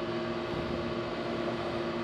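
Steady hum of running equipment: a constant low tone with a fainter one above it, over an even wash of noise.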